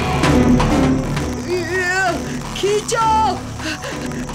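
Background music, then from about a second and a half in, a few short strained vocal grunts from cartoon characters heaving on a rope.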